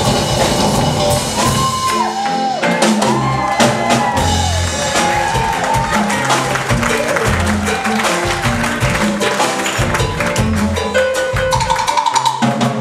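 Live jazz band music led by a fretted electric bass over a drum kit: a melodic bass line with sliding, bending notes above the low end, while drums and cymbals keep time.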